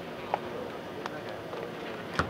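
A few short knocks of a basketball bouncing on a hardwood court, the loudest about a third of a second in, over faint background voices.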